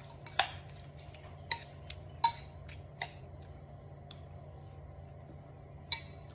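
Metal spoon clinking against a ceramic bowl as a rice bowl is stirred and mixed, about seven irregular clinks with a brief ring, the sharpest about half a second in and a little after two seconds.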